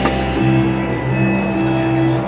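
Dance music played over loudspeakers in a large hall, with long held bass notes and higher sustained tones and a sharp click at the very start.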